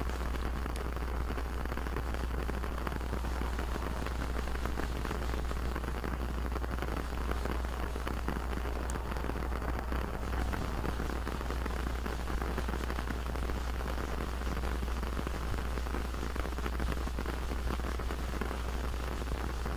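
A steady hiss like rain falling on a surface, running evenly over a low hum.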